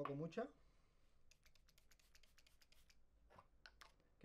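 Near silence, with a brief run of faint high ticks about a second in and a few more near the end.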